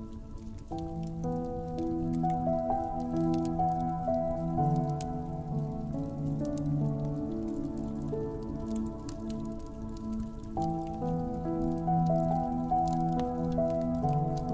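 Slow, soft piano music of held chords, the harmony shifting a few times, layered over a wood fire crackling with scattered small pops and snaps.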